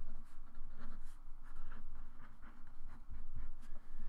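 Sharpie felt-tip marker writing on paper: a quick run of short scratchy strokes as a line of words is written.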